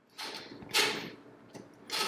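Glider plates under the feet sliding over carpet: two scuffing swishes, the first starting just after the start and the second near the end.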